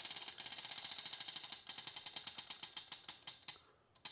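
Spinning prize wheel, its pointer flapper clicking over the pegs at the rim: a fast run of ticks that slows steadily as the wheel coasts down, stopping just before the end.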